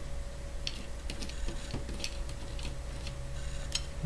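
Steel nuts and washers ticking and clinking lightly as they are turned and fitted onto threaded rods by hand: a dozen or so scattered small clicks, over a steady low hum.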